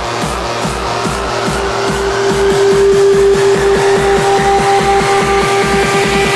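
Vietnamese vinahouse-style electronic dance music from a nonstop DJ remix mix. A steady kick drum and short falling bass notes repeat several times a second. A held synth tone comes in about a second and a half in, and the track builds slightly louder.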